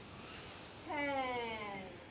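A man's drawn-out voiced exhalation during a bending-forward exercise movement. It starts about a second in and falls steadily in pitch for about a second.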